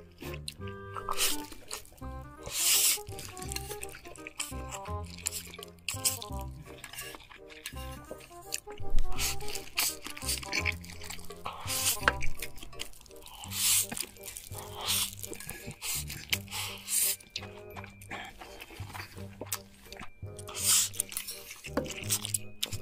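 Background music with a steady repeating pattern, over which a person slurps mouthfuls of spicy stir-fried instant noodles. Several loud slurps come a few seconds apart.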